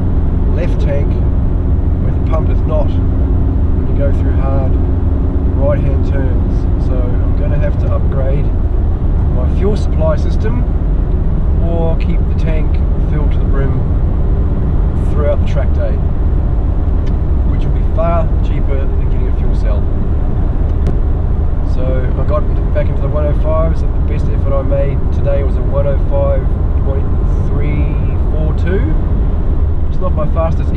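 A man talking over the steady low drone of a car cabin at road speed, the engine and tyre noise of the car being driven.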